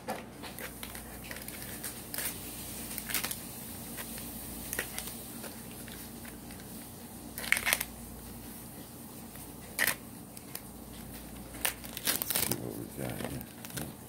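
Package wrapping being crinkled and torn open by hand in a string of short rustling bursts, loudest about halfway through and again near the end.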